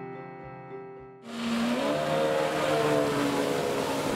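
Soft guitar background music, then about a second in a loud rushing sound swells up with a rising, engine-like pitch and holds: a whooshing transition sound effect.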